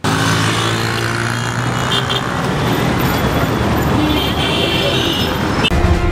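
Busy street traffic: minibus and car engines and road noise, with short horn toots about two seconds in and again between about four and five seconds. It cuts off abruptly just before the end.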